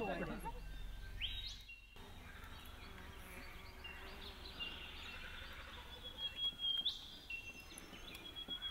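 Faint outdoor ambience with birds calling: long whistled notes, some ending in a quick upward sweep, about a second and a half in and again near the end.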